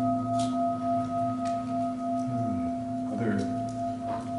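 Brass singing bowl ringing with a steady, sustained tone of several pitches and a slow pulsing beat; the higher tones fade about three seconds in while the low one carries on.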